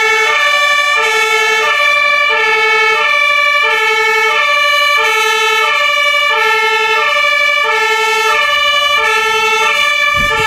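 German two-tone fire engine siren on a TLF 20/40 tanker, sounding loudly and alternating evenly between a low and a high tone, each held about half a second.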